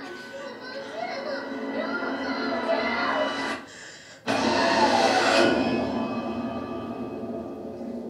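Horror film trailer soundtrack heard through a hall's loudspeakers: a child's voice over building, tense music, a brief drop-out, then a sudden loud hit about four seconds in that rings and slowly fades as the title card appears.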